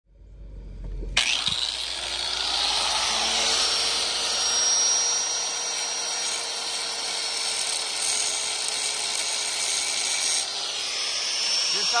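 Angle grinder with a thin cutoff wheel cutting into a steel lug nut that spins on its stud, starting suddenly about a second in and running steadily under load. Near the end the high grinding hiss drops off as the cut eases.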